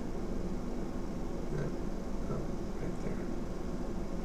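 Steady low hum and hiss of workbench room noise, with a couple of faint, short murmurs.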